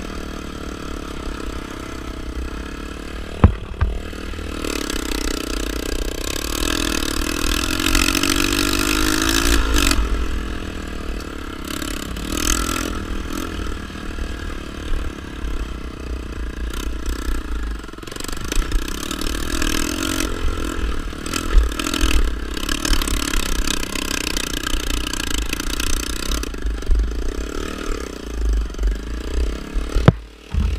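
Dirt bike engine running and revving up and down as the bike is ridden over sandy trail, with a low rumble on the microphone and one sharp knock about three and a half seconds in. The exhaust sounds loud: its header is cracked, which the rider hears as the bike suddenly getting much louder.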